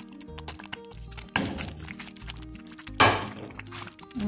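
Two hard knocks, the second about three seconds in and louder: an earthenware plate striking the rim of an earthenware pot as shredded chicken is emptied into the rice. Background music plays throughout.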